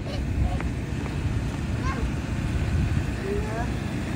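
Low steady rumble of an idling school bus engine, mixed with wind buffeting the microphone.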